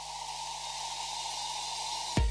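A steady hiss of white noise growing gradually louder, with a thin steady tone beneath it: a noise-swell sound effect at the start of an advertisement.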